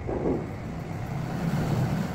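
A steady low rumble, with a brief falling sweep near the start.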